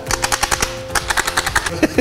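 Mock machine-gun fire: a fast, even rattle of shots, about ten a second, stopping shortly before the end.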